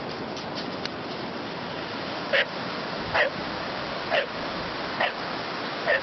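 A dog barking or yelping five times, about once a second, each call falling in pitch, over a steady rushing noise.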